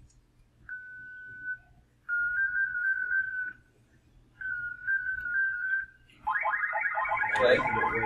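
Amateur-radio digital-mode audio from FLDigi in Thor 50x2 mode, played through a speaker for acoustic coupling: three short bursts of a whistling tone, the later two stepping slightly in pitch, then from about six seconds a wider warbling chord of many tones.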